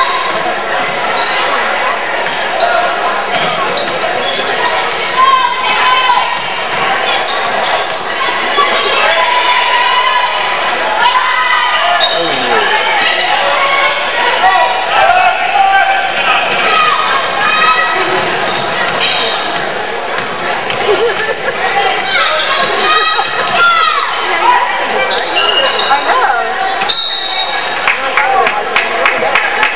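Basketball bouncing on a hardwood gym floor amid a steady din of many spectators' voices talking and calling out, carried by the echo of a large gymnasium.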